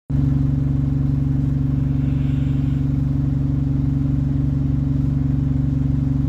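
A bus engine running steadily, heard from inside the passenger cabin as an even low hum that holds the same pitch throughout.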